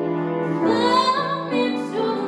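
A woman singing in classical style with vibrato, accompanied by piano. The piano plays alone at first, and the voice comes in about half a second in.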